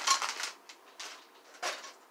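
A clear plastic bag of model kit parts crinkling and rustling as it is handled, loudest in the first half second, with a shorter rustle near the end.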